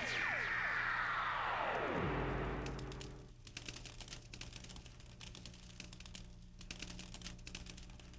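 Production sound effect at the end of a reggaeton track: several tones fall in pitch together over about two seconds, dropping faster as they go, like a slowing tape stop. Faint scattered crackling clicks over a low hum follow.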